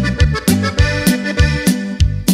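Norteño band music in an instrumental passage without singing: accordion melody over a pitched bass line and a steady, even drum beat.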